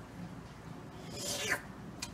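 A person making one brief, breathy slurping sound that falls in pitch, about a second and a half in, as if drinking from a glass of water.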